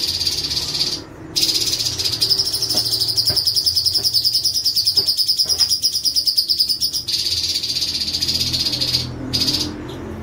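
Orange-bellied leafbird (cucak cungkok) singing a very fast, rolled trill, held for long stretches and broken only briefly about a second in and again near the end.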